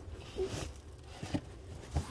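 Faint rustling with a few soft knocks: handling noise from a phone being moved about and rubbing against fabric.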